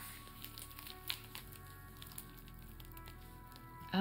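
Soft crinkles and taps of plastic sleeve pages in a trading-card binder being handled, mostly in the first second or so. Quiet background music plays throughout.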